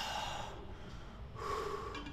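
A man panting hard, winded from exercise: a heavy exhale through the mouth at the start, then another breath with a slight voice in it about one and a half seconds in.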